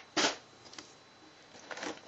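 Crumpled packing paper rustling in a cardboard box: one short, loud rustle just after the start, then a few light crinkles and clicks near the end as a hand reaches in among the boxed figures.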